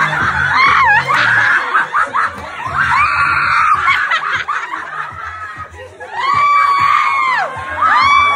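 People shrieking and laughing, with two long high-pitched screams held for about a second each near the end, over background music with a low bass beat.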